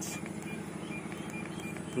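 Steady low background noise with faint, evenly spaced high ticks.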